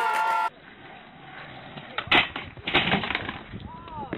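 Skateboard on concrete: a low rolling rumble, then a loud clack about two seconds in and a cluster of knocks and scuffs just under a second later as the board gets away and the rider falls.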